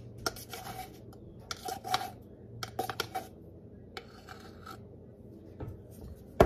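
Plastic measuring spoon scooping and scraping baking powder from a tin, with light taps against the can, heard as a few clusters of short rasping scrapes and clicks.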